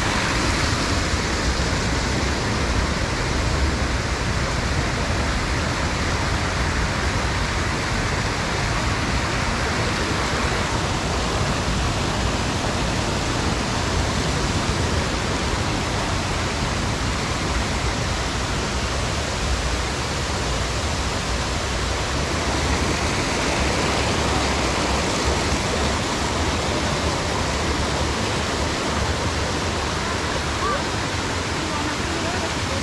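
A fast-flowing stream rushing over small cascades: a loud, steady rush of water.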